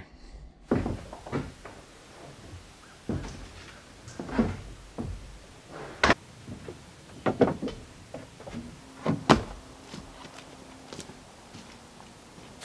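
A series of irregular knocks and bangs, about ten in all, the loudest around six and nine seconds in.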